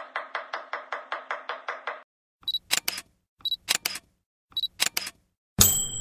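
Film-countdown leader sound effect: rapid, even projector-like ticking at about seven ticks a second for two seconds, then three short high beeps with sharp clicks about a second apart, and a brief swishing transition effect near the end.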